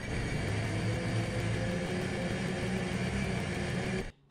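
Sea-Doo GTX-S 155 personal watercraft's Rotax 1503 three-cylinder four-stroke engine idling steadily. It is being run out of the water with no flushing hose hooked up.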